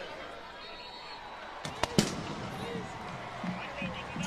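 Extra-point kick in a stadium: a sharp thump from the kick about two seconds in, with a second sharp crack just after, over steady crowd noise.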